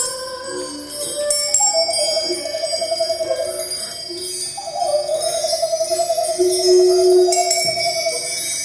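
A woman singing wordless long notes with a fast, wide vibrato, two held notes, the second starting about halfway through. Under them are shorter lower notes and a bell-like chiming accompaniment.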